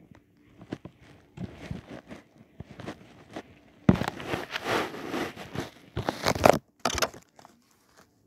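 Handling noise of plush toys being moved across a carpet by hand: irregular rustling and brushing with light knocks, in bursts, the longest from about four seconds in.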